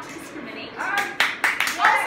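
Hands clapping, a run of sharp claps about a second in, with voices over them.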